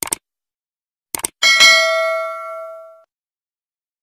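Subscribe-button animation sound effect: a quick double mouse click, another double click about a second later, then a single bright bell ding that rings out and fades over about a second and a half.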